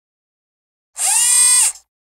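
Short logo-reveal sound effect: a bright, ringing swoosh under a second long that bends up in pitch as it starts and down as it fades.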